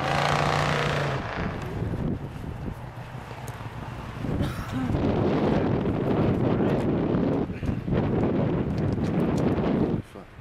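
Wind buffeting the microphone, a low rumble that is loudest in the second half. A brief steady held tone sounds in the first second.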